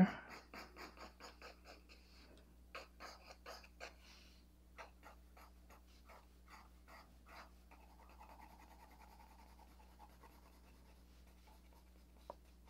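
Soft 6B graphite pencil scratching on paper in quick, short, repeated strokes, about four a second, in runs with brief pauses, as strands of hair are shaded. Faint throughout.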